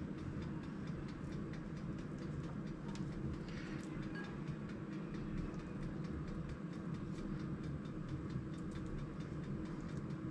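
Steady low hum of an air fryer's fan running. Faint, irregular clicks and scrapes from a kitchen knife paring the skin off an avocado sound over it.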